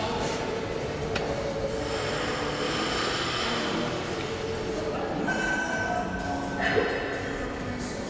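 Steady background noise of a busy gym, with faint voices mixed in.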